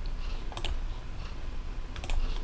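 A few sparse, light clicks from a computer mouse and keyboard in use, the clearest about half a second in, over a low steady background hum.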